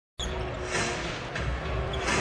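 Arena sound of an NBA game: crowd noise with a basketball bouncing on the hardwood court, cutting in suddenly a moment after the start.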